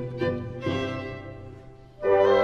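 Classical chamber music played by a small ensemble: a violin carries the melody over cello and other bowed strings. The phrase dies away, growing steadily quieter toward the end.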